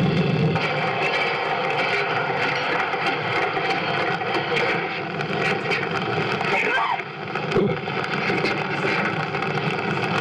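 Live experimental electronic noise improvisation: a dense, steady wash of noise layered with held drone tones, with a few short pitch sweeps about seven seconds in.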